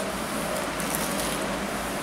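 A man biting into and chewing a breaded, deep-fried chicken sandwich, with faint crunching over steady room noise.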